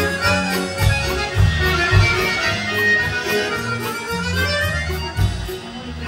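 Instrumental introduction by a Russian folk band, led by button accordions (bayans) over bass guitar, drum kit and quick repeated notes from plucked folk strings. There are a few louder drum hits in the first two seconds and again about five seconds in.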